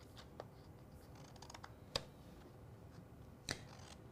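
Quiet handling and trimming of a sheet of printed sublimation paper: faint paper rustling with a few small sharp clicks, the sharpest about two seconds in and another near the end.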